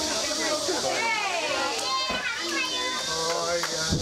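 Several children's voices calling and shouting in high, gliding tones, mixed with adult voices, over a steady high-pitched hiss.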